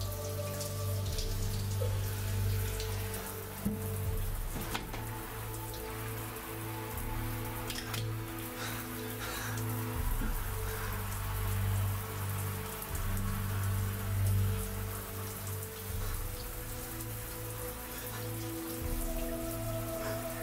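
Steady rain with a few sharp drips, over a slow score of low held chords that change every few seconds.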